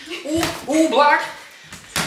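A voice during sparring, then one sharp smack of a boxing glove landing just before the end.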